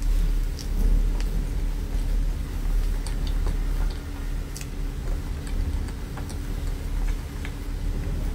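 Close-miked eating of a soft cream-filled crepe roll: small wet mouth clicks and smacks scattered through the chewing, over a steady low rumble and hum.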